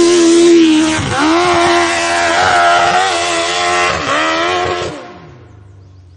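Dirt bike engine held at high revs as it climbs a steep hill, its pitch dropping and rising again twice, about a second in and about four seconds in. The sound fades out about five seconds in as the bike goes over the crest.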